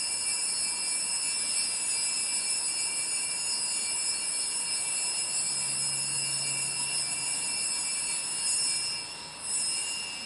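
Altar bells rung continuously during the elevation at the consecration of the Mass: a sustained high, ringing jangle, broken briefly near the end and rung once more.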